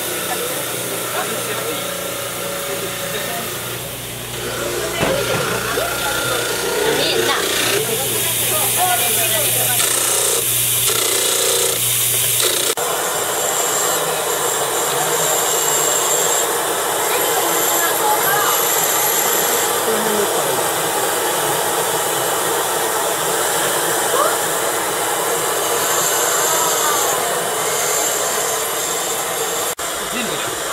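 Dental lab model trimmer running, its grinding wheel cutting a plaster model with a low hum and hiss. About thirteen seconds in the sound changes to a dental lab micromotor handpiece with a high whine as its bur grinds a stone model.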